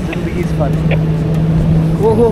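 Engine hum and road noise of a moving car, heard from its open rear boot, with a steady low drone.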